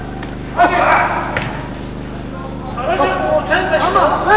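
Footballers' voices calling out during an indoor five-a-side game, in two spells with a short lull between, and a faint thud of the ball being kicked.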